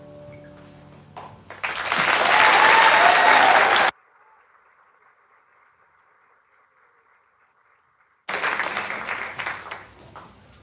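The last held notes of a choir-and-piano song die away, then audience applause breaks out about a second and a half in and stops abruptly at about four seconds. After a few seconds of near silence, the applause comes back suddenly just past eight seconds and fades near the end.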